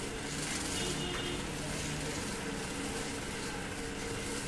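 Bicycle bottle dynamo running against the tyre as the bike is pedalled, a steady whir with a faint hum, generating the current that charges the phone.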